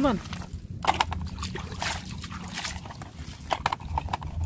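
Water splashing and sloshing in irregular strokes as a plastic toy dump truck is swished and rinsed by hand in a tub of water.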